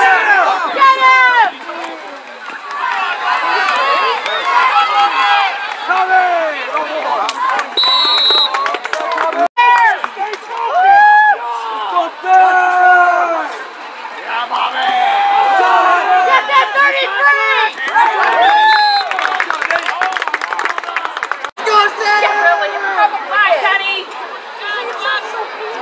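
Many voices on a football sideline shouting and calling out at once, overlapping throughout. A brief high whistle blast, typical of a referee's whistle, sounds about eight seconds in.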